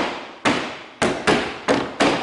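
A hand pounding on the glass side window of a Land Rover Series III, several sharp knocks about two a second, each ringing briefly, the glass holding.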